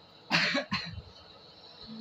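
A boy coughing twice in quick succession, a loud first cough about a third of a second in and a shorter one right after it, brought on by the chilli heat of the spicy noodles he is eating.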